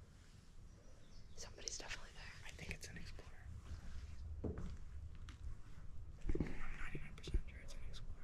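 Quiet, mostly whispered talk, with scattered small clicks and knocks. The voices get louder near the end.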